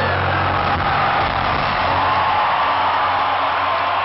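Loud live rock concert sound in an arena, caught on a phone microphone: a dense, steady wash of the band's amplified sound and crowd noise, with a few thin high tones drifting over it.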